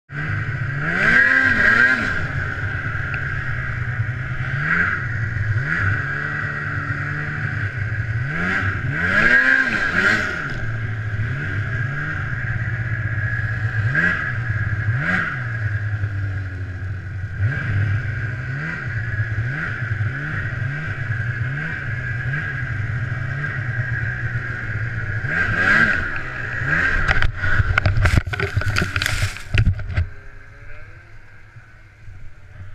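Ski-Doo snowmobile engine revving up and falling back again and again as it runs along the trail. Near the end comes a run of sharp knocks and clatter.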